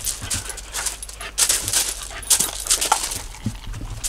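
Two dogs panting at feeding time, with short crunching sounds from gravel and dry kibble in a steel bowl, loudest in a couple of clusters in the middle.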